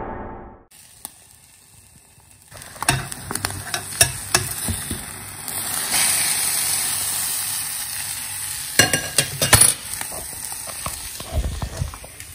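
A gong's ringing dies away at the start. After a short silence, a folded crêpe fries in a frying pan with a steady sizzle, and a utensil scrapes and taps against the pan now and then.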